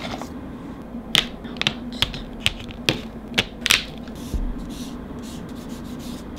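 Plastic-handled nail-art brushes clicking and tapping as they are picked out of a holder and handled: a run of about nine short, sharp clicks in the first four seconds, then quieter.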